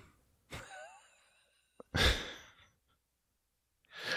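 A man's soft laugh, then about two seconds in a loud breathy sigh out into the microphone.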